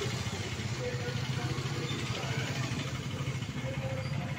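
Motorcycle engine running steadily at low revs in slow traffic, with people's voices around it.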